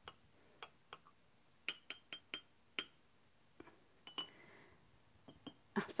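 Light clinks and taps of glass and a paintbrush against jars on a painting table, about a dozen faint separate ticks with a short ring, as a brush is picked up.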